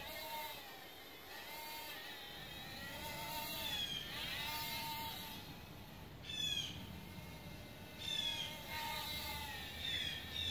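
Birds calling outdoors: repeated short arching whistled calls, joined by quick high chirps and a few rapid falling chirp series.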